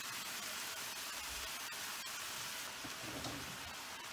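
Cabbage frying in bacon grease in a pan: a faint, steady sizzle with scattered small crackles.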